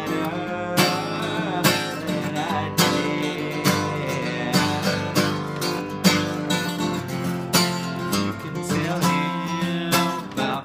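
Acoustic guitar strummed in a steady rhythm, chords ringing, with strong strokes landing about once a second and lighter strums between.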